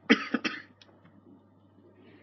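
A person coughing: three short coughs in quick succession just at the start.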